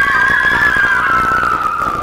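Several girls screaming together in one long, high scream that wavers and sinks slowly in pitch, cutting off just after the end.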